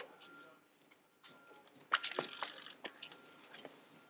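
Faint scuffs and knocks of a giant tractor tyre being flipped over on paving. They begin about two seconds in, under faint voices.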